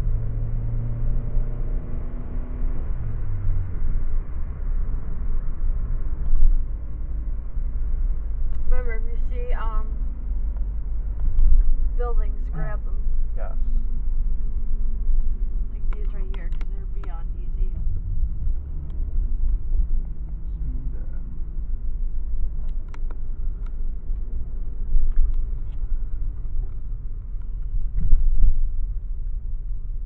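Inside a moving car: steady low rumble of engine and road noise, with the engine's hum dropping in pitch about three seconds in.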